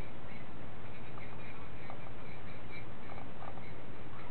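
Steady background hiss and low hum, with a few faint short clicks and squeaks.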